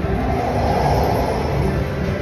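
Ultimate Fire Link slot machine's transition sound effect as the free games bonus ends and the screen changes back to the base game: a dense swell of noise that peaks about a second in and fades, over casino background noise.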